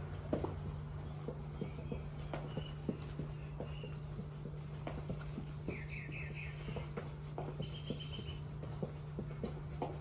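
Feet stepping and shuffling on the floor during a dance, a scatter of light irregular taps and thumps over a steady low hum. A few faint high squeaks come in the middle.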